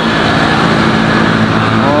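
Steady engine drone of a motor vehicle running close by.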